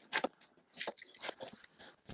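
Cardboard box being cut open with a box cutter and its flaps worked loose: about four short, sharp scraping rasps of blade and cardboard, roughly half a second apart.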